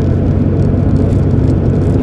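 Car driving along a road, heard from inside the cabin: a steady low drone of engine and tyre noise.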